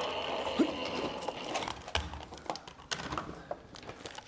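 Motor of a Gemini electric die-cutting machine running with a steady whir for about a second and a half, then stopping. The plate sandwich, packed with too many layers of foam, is not feeding through. Several clicks and knocks of the cutting plates being handled follow.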